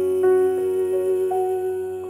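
Grand piano playing a slow line of single notes, about three a second, under one long held note that ends near the end.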